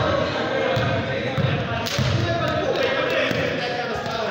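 A basketball bouncing on a gym floor in a pickup game, a few dull thumps about a second in, with a sharper knock a little before the two-second mark. Players' voices echo in the large hall.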